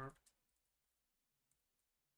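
Near silence, with a few faint, scattered clicks from working at a computer as code is edited.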